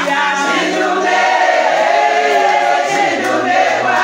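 A group of women singing a church song together, many voices at once.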